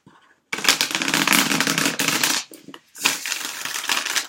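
A deck of tarot cards being riffle-shuffled by hand: two runs of rapid card flicks, the first starting about half a second in and the second after a brief pause.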